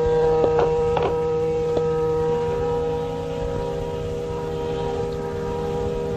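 Harmonium holding one steady sustained chord, with a few faint taps in the first two seconds.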